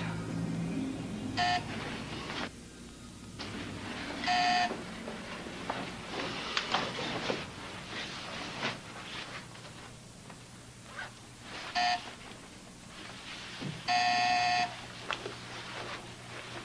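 Electric doorbell buzzer pressed four times in an uneven pattern: a short buzz, a longer one, then after a pause another short one and a longer one. Soft rustling of movement between the buzzes.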